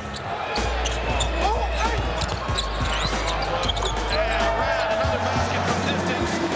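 A basketball bouncing on an indoor court, with short squeaks, over background music that has a steady low bass.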